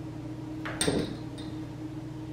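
Small glass votive candle holders set down on a plate, with one sharp clink a little under a second in and a lighter tap about half a second later.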